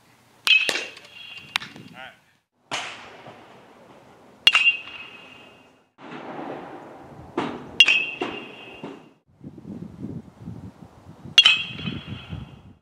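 Baseball bat hitting pitched balls in batting practice: four sharp, ringing pings, about three to four seconds apart.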